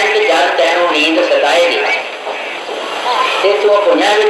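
Speech only: a man's voice talking without pause into a microphone, some syllables drawn out in a sing-song way.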